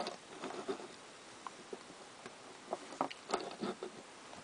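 Light scattered clicks and taps of a small plastic Transformers Scoop toy in its wheel-loader vehicle mode being handled and adjusted, with a few sharper clicks a little past three seconds in.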